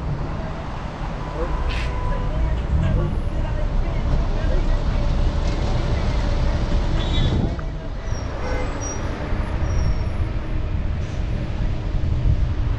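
City road traffic heard from a bicycle riding among cars, vans and trucks, with a steady low rumble throughout.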